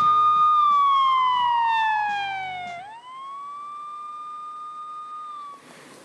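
A siren-like sound effect in a TV title sequence. A high tone holds, slides down for about two seconds, swoops back up about three seconds in, then holds and fades out near the end. Rock theme music plays under it and stops where the tone swoops up.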